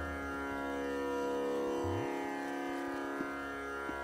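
Hindustani classical accompaniment in Raag Bhupali in a pause between sung phrases. A steady string drone holds, and about two seconds in comes a soft low tabla stroke that rises in pitch, with light taps near the end.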